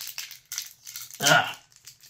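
Ricola cough drop's wrapper crinkling in quick crackles as it is unwrapped by hand, with a short vocal sound a little over a second in.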